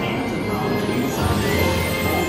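Dark-ride show soundtrack playing loudly over the ride's speakers: music with held tones and a voice mixed in.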